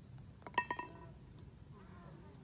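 A putter striking a golf ball: a sharp click about half a second in, with a brief metallic ring that dies away quickly.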